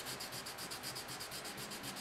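320-grit wet sandpaper rubbed by hand over a putty-filled seam on a plastic model hull, in quick, even back-and-forth strokes, faint and raspy.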